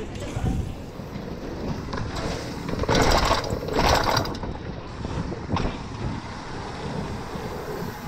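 Mountain bike rolling fast over paving stones, heard from the bike itself: tyre noise, chain and frame rattle and wind on the camera microphone. It gets louder for about a second and a half in the middle.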